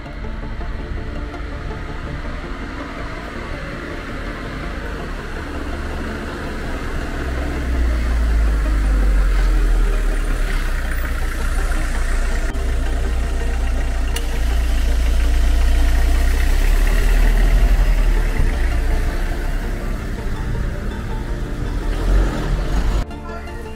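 A motor vehicle's engine running close by, a low rumble that grows louder about eight seconds in and stays up until near the end, with background music.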